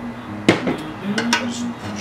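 Steel calipers clicking against the aluminium chassis: one sharp metallic click about half a second in, then two lighter clicks a little after a second.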